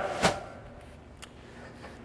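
A knock, then a lighter click about a second later, as a plastic-seated chair with metal legs is picked up and raised off a concrete floor; faint room tone in between.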